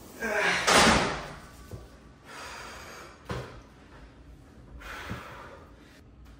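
A man's strained grunt and forceful exhale at the top of a heavy Smith-machine bench press, loudest about a second in, followed by heavy breathing. A sharp metal clank a little over three seconds in as the bar is racked.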